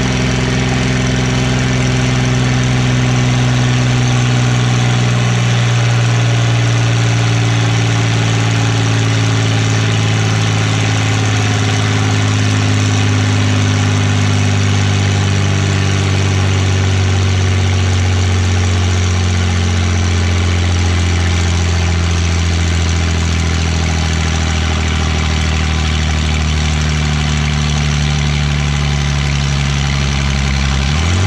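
A John Deere tractor's diesel engine running hard under dynamometer load. Its pitch sinks slowly and steadily as the load drags the revs down.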